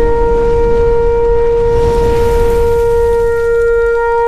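A shofar held on one long steady note over a low rumble, with a rushing whoosh swelling up about halfway through.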